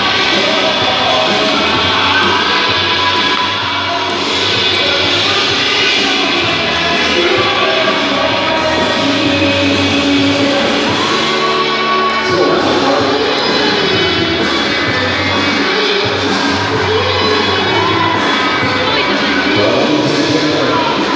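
Music playing loudly over an ice rink's sound system, with a crowd cheering and shouting.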